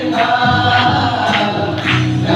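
A large group singing together in chorus, with sharp percussive beats marking the rhythm.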